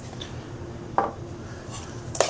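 A fork gives a single short clink against a stainless steel mixing bowl about a second in, over a low steady hum.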